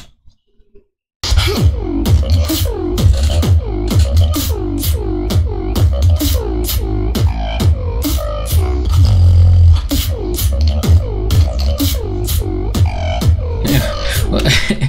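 Beatboxing into a handheld microphone, starting suddenly about a second in: a deep vocal bass held underneath a fast run of repeated falling pitch sweeps and sharp snare and hi-hat clicks.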